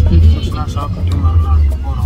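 Background music with a steady beat and a voice, over a steady low rumble inside a moving car's cabin.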